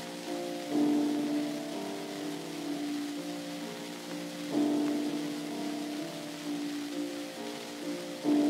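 Acoustically recorded 78 rpm disc from 1924 playing a piano introduction, with chords struck about every four seconds that ring on between strikes. Steady record surface hiss runs underneath.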